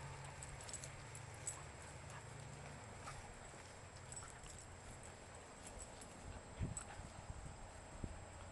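Faint sounds of dogs moving about on grass: scattered light clicks over a low rumble, with one thump about six and a half seconds in.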